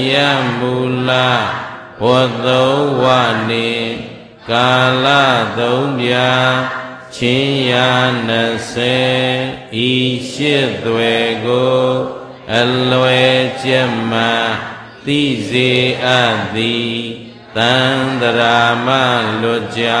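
A Buddhist monk's single male voice chanting Pali verses through a microphone, in a steady, nearly level recitation pitch. The phrases last a few seconds each, with short breaths between them.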